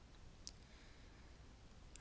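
Near silence: room tone with one faint, short computer mouse click about half a second in.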